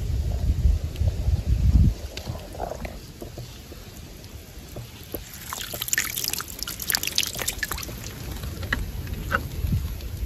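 Water streaming and dripping back into a shallow stream pool after being lifted out, a quick patter of drops about halfway through that thins to a few single drips. A low rumble comes in the first two seconds.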